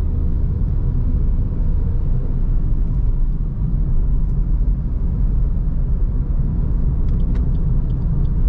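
Steady low rumble of a Suzuki Ertiga's engine and tyres heard from inside the cabin as it drives along.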